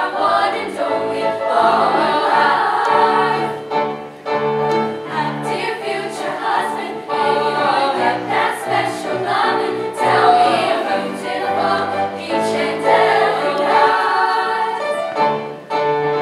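Teenage girls' choir singing in several-part harmony, holding chords and moving through the phrases without a break.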